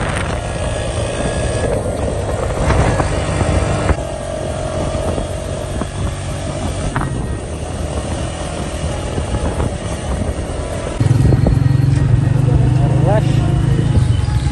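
A motorcycle running while being ridden, with a steady engine note under road and wind noise. The sound shifts abruptly about four seconds in, and again near the end, where it grows louder with street traffic.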